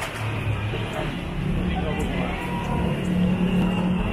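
Street ambience: road traffic with car engines running, mixed with indistinct voices of people talking.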